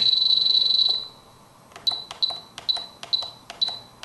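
Spektrum DX7se radio transmitter beeping at each press of its increase/decrease rocker while scrolling through the letters of the model name: a rapid run of high beeps for about the first second, then six single beeps about half a second apart.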